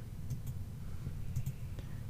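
A few light computer mouse clicks in two small groups, one near the start and one past the middle, over faint room noise.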